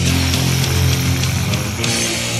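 Black/death metal: distorted electric guitars playing sustained chords over drums and cymbals, the chord changing with a cymbal crash near the end.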